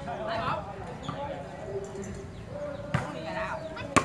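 A volleyball struck by hand twice: a lighter hit about three seconds in, then a sharp, loud hit just before the end. Players' voices call out in between.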